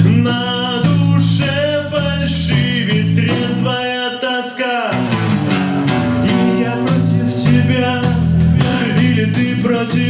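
A live band playing a song: a singer over an electric bass line and snare drum. The bass cuts out briefly about halfway through, under a downward sliding vocal line, then comes back in.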